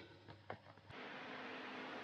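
Faint room tone: one faint short click about a quarter of the way in, then a steady low hiss from about halfway.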